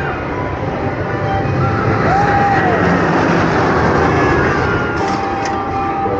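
Roller coaster train rolling along its track close by, a rushing noise that builds about two seconds in, stays strongest through the middle and eases toward the end.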